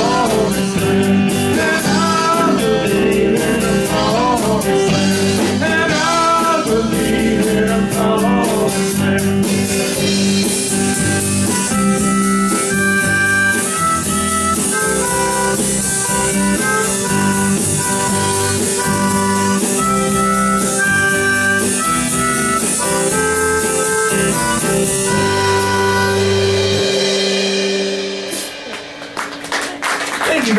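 Live rock-and-roll band with electric guitar, bass guitar and drum kit, with a man singing in the first part and then a harmonica playing over the band. The song ends about two seconds before the end.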